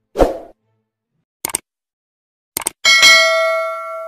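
Subscribe-button sound effects: a short hit, then two quick double clicks, then a bell ding near the end that rings on and fades.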